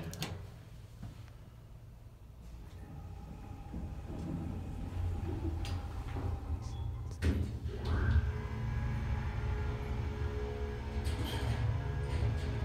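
Elevator doors closing with a few clunks, then the hydraulic pump motor of a 1977 Otis hydraulic elevator starting up and running with a steady low hum and whine as the car travels.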